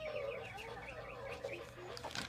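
A domestic cat yowling: one long, drawn-out wavering meow that trails off near the end.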